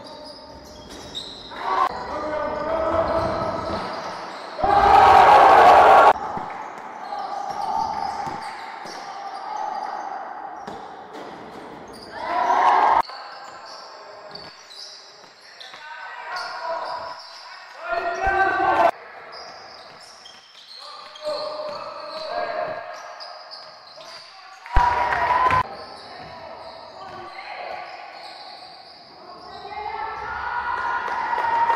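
Basketball dribbling on a gym floor, with players' shouts echoing in a large sports hall. There are several short loud bursts, the loudest about five seconds in.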